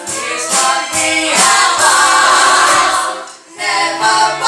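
Stage musical number: the cast singing together with musical accompaniment, with a short break in the music about three and a half seconds in before it resumes.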